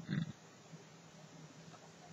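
A short low grunt-like sound from a man's voice right at the start, then near silence.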